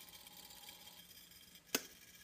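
Quiet room tone with a faint steady hum, and one short sharp click near the end.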